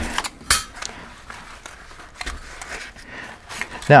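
Flat titanium stove plates being slid out of a zippered nylon pouch: fabric rustling with a few light metallic clicks, the sharpest about half a second in.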